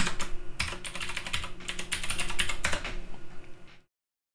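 Computer keyboard typing in quick runs of keystrokes, entering a username and password into a login form; it cuts off suddenly near the end.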